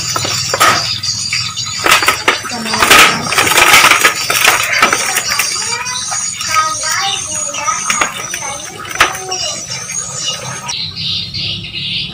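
Leaves and twigs of a mango tree rustling and crackling, with short snaps, as young green mangoes are pulled off a bunch by hand; the loudest rustle comes about three seconds in.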